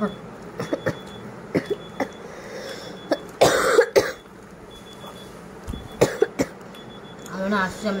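A person coughs once about halfway through, amid small clicks and smacks of someone eating fried chicken. A few spoken words come near the end.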